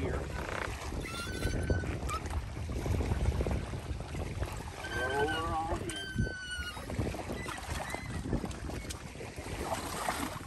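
Inflatable kayak on a C-Tug wheel cart being pushed down a concrete ramp into lake water, heard mostly as a steady low rumble of handling and wind on the microphone. A few short high calls come through about five and six seconds in.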